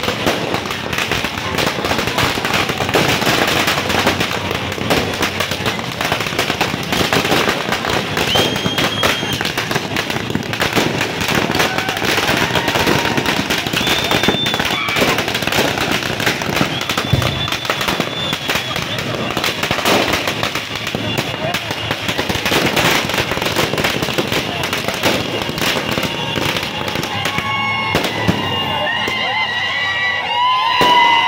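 Firecrackers bursting in rapid succession, a dense continuous crackle of bangs with a few short high-pitched whistles over it. Near the end the crackling thins and shouting voices come through.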